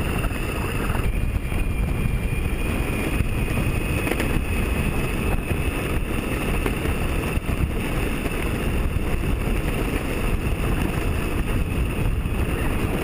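Electric skateboard riding on asphalt: the board's large 97 mm longboard wheels rumble steadily on the road surface, with wind buffeting the action camera's microphone and a steady high whine from the drive running underneath.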